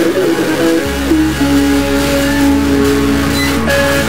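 Instrumental rock music with no singing: electric guitars holding sustained notes over bass, the bass coming in about a second in.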